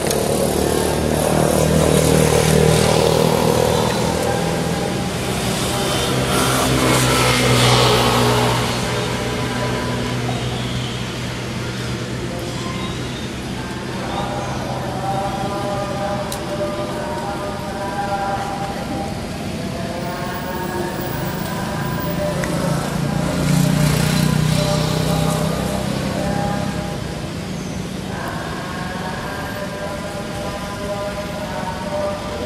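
Motor traffic passing, swelling and fading several times, loudest about two, eight and twenty-four seconds in, with steady pitched tones running under the second half.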